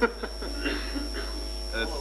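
Steady low electrical mains hum runs under a short laugh at the start and some faint murmuring.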